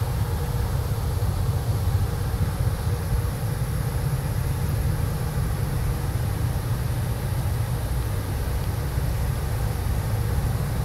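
Steady low rumble with a hiss over it and a faint even hum underneath, unchanging throughout.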